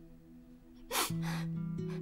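A woman's short, sharp breath, two quick puffs about a second in, as soft background music comes in with low held notes.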